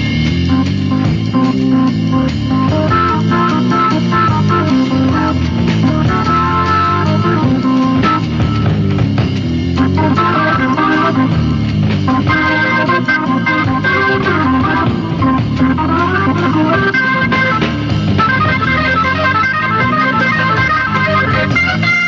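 A jazz-rock band playing an instrumental passage: a Hammond organ leads over a moving bass line and drums.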